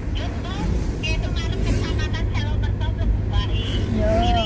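Steady low rumble of a car's engine and tyres heard from inside the moving cabin, with a voice going on over it.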